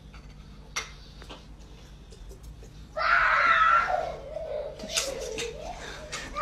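A young child's high-pitched squeal about halfway through, loud and sliding down in pitch over a second or so, followed by more short vocal sounds. Before it come a few light clicks.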